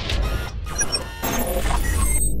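Electronic sound design for an animated logo intro: several whooshing sweeps and short glitchy beeps over a deep, steady bass drone.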